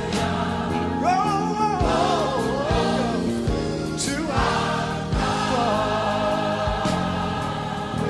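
Large gospel choir singing sustained chords with band accompaniment, a wavering lead line rising above the choir, and a steady drum beat under it.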